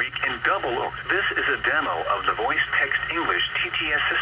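Only speech: the text-to-speech voice of a NOAA Weather Radio broadcast reading a severe weather warning, heard through a scanner's speaker and sounding thin, with nothing above about 4 kHz.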